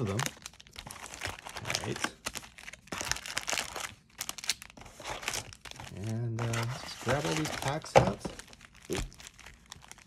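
Foil Magic: The Gathering booster pack wrappers crinkling and rustling in quick, irregular bursts as packs are pulled from the booster box and handled, with one sharper crackle about eight seconds in.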